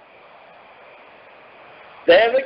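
Faint steady hiss of the recording's background noise during a pause in speech, with no other sound.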